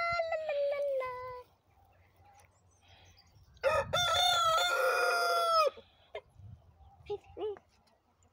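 A rooster crows once, a single crow of about two seconds that begins around three and a half seconds in and drops in pitch at its end.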